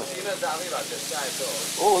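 Oil sizzling on a hot flat griddle as flatbreads fry, a steady hiss under nearby talk.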